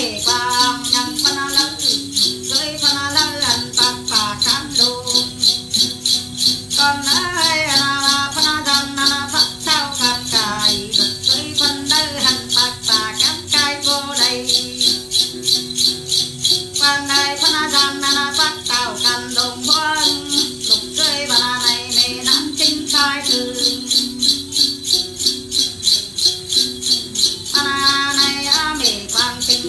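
A Then shaman's chùm xóc nhạc, a cluster of small metal bells, shaken in a steady rhythm about three times a second, under a woman's Then ritual singing in phrases with short breaks.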